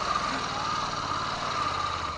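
Honda NC700X motorcycle's parallel-twin engine idling steadily.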